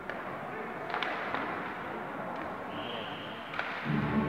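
Ice hockey play heard from the stands: steady crowd chatter with several sharp clacks of puck and sticks on the ice and boards, then a short high referee's whistle blast near the end that stops play.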